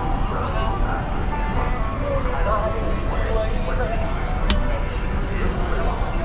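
Busy shopping-street ambience: voices of passers-by talking over a steady low rumble, with faint music in the background. A single sharp click comes about four and a half seconds in.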